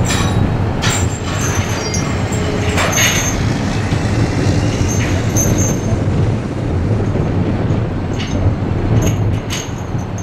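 Steady low rumble of heavy machinery running, with occasional sharp metallic clanks and clinks from chains and tools being worked on a rail flat car carrying a steam locomotive.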